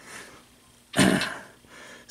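A man clearing his throat once: a short, rough burst of breath about a second in that fades quickly.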